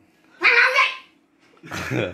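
Two short, loud wordless vocal cries, the first about half a second in and the second near the end.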